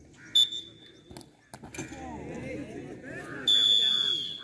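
Referee's whistle blown twice: a short blast about a third of a second in, then a longer blast near the end, marking the start and end of a penalty shootout attempt. Spectators' voices chatter in between, with a couple of sharp clicks around the middle.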